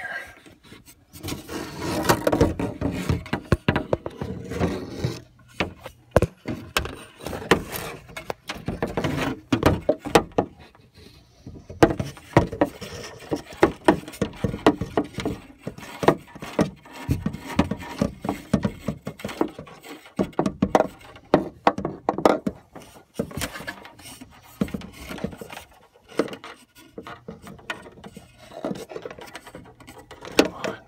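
A phone and a plastic cup on a string knocking, scraping and rubbing against the wooden sides of a narrow wall cavity, in an irregular run of clicks and scrapes with a couple of brief pauses.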